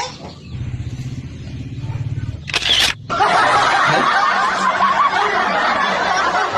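A mobile phone buzzing for about two seconds, then a short sharp swoosh as a photo is sent, followed by a long stretch of laughter.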